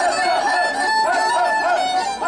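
Traditional Romanian Căluș dance music: a fast, ornamented fiddle melody of quick up-and-down turns, played without pause.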